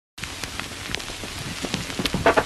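A crackling, hissing noise bed of scattered clicks and pops over a low rumble, at the start of a boom bap hip hop track, slowly growing louder before the beat comes in.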